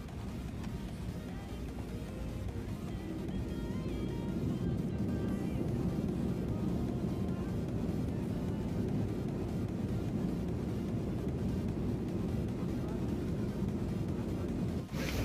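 Background music over the low, steady rumble of an airliner cabin as a Ryanair Boeing 737 rolls along the runway after landing. The rumble grows louder a few seconds in and then holds.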